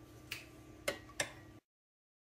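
Three sharp clicks of a metal spoon against ceramic crockery as gravy is spooned over a pie, the last two close together. A sudden dropout to dead silence follows near the end.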